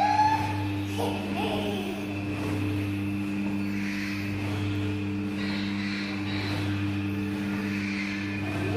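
Coin-operated kiddie ride running with a steady electric hum, with a child's short squeal in the first second or two.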